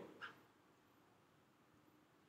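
Near silence: room tone, with one faint, very brief sound just after the start.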